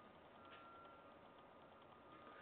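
Near silence: faint room tone, with a faint thin high tone for about half a second near the start.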